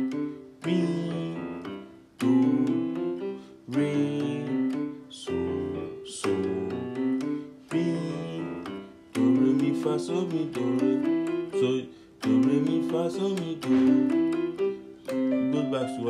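Piano keyboard playing a stepwise scale-pattern fingering exercise with both hands, in short repeated phrases that each start sharply and fade away.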